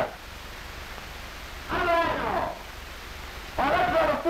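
A person's short wordless vocal sound about two seconds in and another starting near the end, over steady old-film soundtrack hiss.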